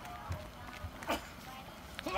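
Mostly quiet, with a few faint thumps from footsteps and heavy loaded farmer's walk implements being carried at a walk, and one sharper knock about a second in.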